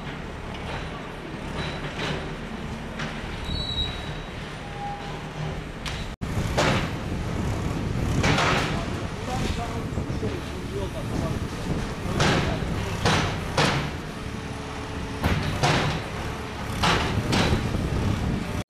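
JCB backhoe loader engine running while its arm demolishes a small brick and timber building. After about six seconds come repeated loud crashes of breaking masonry and timber, and voices of onlookers are heard.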